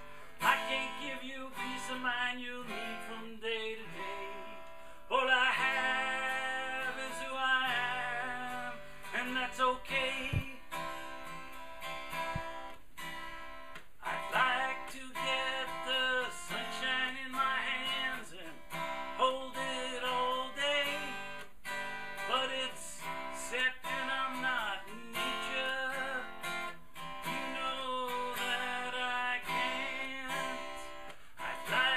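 Steel-string acoustic guitar strummed through a song, with a man's singing voice coming in at times.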